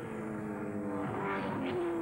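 Touring-car racing engine running at high revs, its pitch sliding slowly down as the sound grows louder.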